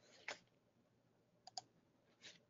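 Near silence broken by a faint double click of a computer mouse about one and a half seconds in, as the presenter tries to advance the slides.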